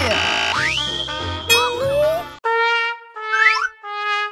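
Comic cartoon-style music cue: a rising slide-whistle-like glide about half a second in, then held brass notes stepping down in pitch over the last second and a half, a sad-trombone-style gag sound.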